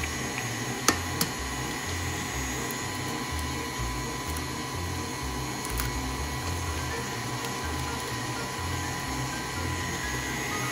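KitchenAid Artisan stand mixer running steadily, its motor whirring with a faint high hum as the beater works a creamed butter-and-sugar batter while eggs are added. Two sharp taps about a second in.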